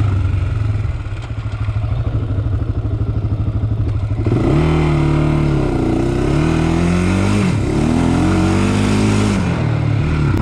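Single-cylinder engine of a Honda 400X sport quad. It runs low and steady for about four seconds, then revs up and swings up and down in several surges of throttle to the end.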